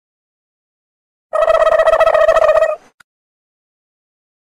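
Cartoon fart sound effect: one loud, steady-pitched, fluttering blast about a second and a half long, starting about a second in, followed by a faint click.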